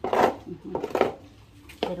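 Plastic shovel scraping wet mud off a hard dirt floor, three quick strokes in the first second.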